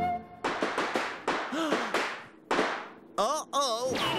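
Cartoon crash sound effects: a quick run of five or six crashes and clatters, another crash, then two bursts of wobbling, warbling tones near the end.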